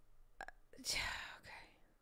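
A faint mouth click, then a short, breathy whisper from a voice close to the microphone.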